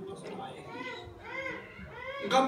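A child's high-pitched voice, speaking or calling softly in rising and falling phrases, heard in a lull between a man's speech.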